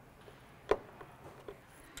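A single sharp click about two-thirds of a second in, with a couple of fainter ticks after it. It is a plastic wire connector snapping onto its pin header on a wine cooler's PC board.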